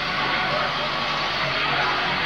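Live industrial rock band heard through a camcorder's microphone in the hall: a steady, distorted wash with a voice over it, the music holding a droning passage without a clear beat.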